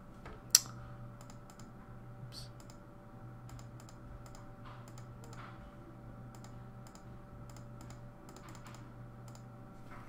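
Irregular light key clicks as a division is keyed into an on-screen TI-84 Plus calculator, with one sharper click about half a second in, over a faint steady hum.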